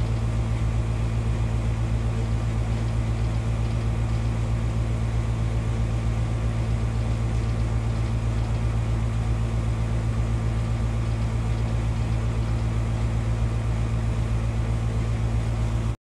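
A steady low mechanical hum, unchanging throughout, that cuts off suddenly at the very end.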